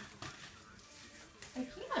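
Faint television sound playing in a small room, with a short click at the start; near the end a young child's voice says "I can't".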